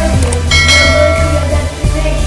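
Background music with a bright bell-like chime that rings about half a second in and fades away over about a second. The chime is the notification-bell sound effect of a subscribe-button animation.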